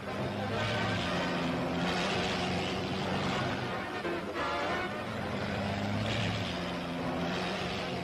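Racing car engines running at high speed, the noise swelling and fading several times as cars pass, mixed with background music on an old newsreel soundtrack.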